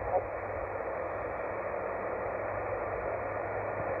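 Yaesu FT-817 portable HF transceiver's speaker putting out steady static hiss on the 20-metre band in upper sideband, with a brief end of a received voice at the very start, as the tuning dial is turned off the station.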